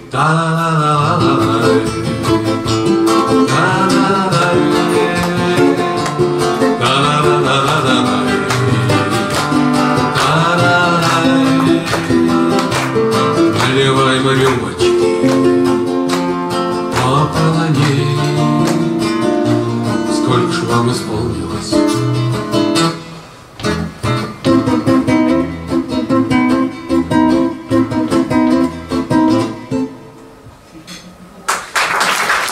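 Two classical acoustic guitars playing a bard song together, with a man singing over them for part of it; a brief quieter moment comes about three-quarters of the way through.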